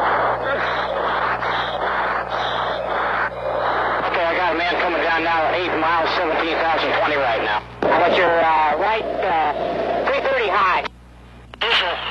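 Fighter pilots' in-flight radio calls, the voices thin, garbled and unintelligible, over a steady electrical hum. The first few seconds are mostly a rushing noise before the voices come in, and the transmission cuts off about a second before the end.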